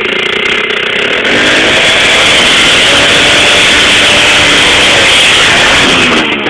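Small motorcycle engine revving hard as the bike pushes through shallow water, with water splashing. The engine gets louder and rises in pitch about a second in, then its pitch wavers up and down.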